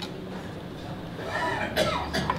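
A person coughing about a second and a half in, over a low steady hum.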